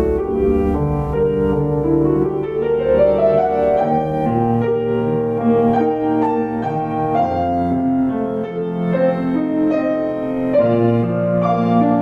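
Petrof grand piano played solo in an improvisation, with held bass notes under a melody and a rising run of notes between about two and four seconds in.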